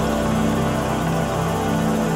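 Music with sustained, held chords.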